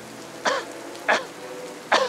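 Three short, strained vocal sounds from a character, like coughs or groans, with steady rain in the background.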